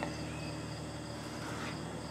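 Faint, steady chirping of crickets.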